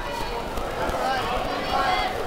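Several voices of spectators and coaches calling out and talking over one another at a kickboxing bout, with no single voice clear.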